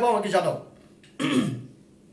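Only speech: a man's voice in two short bursts, one at the start and another just past a second in.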